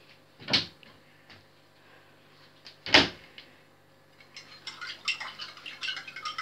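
A metal teaspoon against a small ceramic cup: two sharp knocks about two and a half seconds apart, the second the loudest, then from about four seconds in a run of rapid light clinks as the spoon stirs in the cup.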